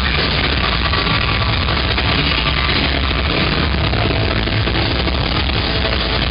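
Live punk rock band playing loud through a concert PA, heard from inside the crowd, muddy and distorted, with a heavy bass rumble.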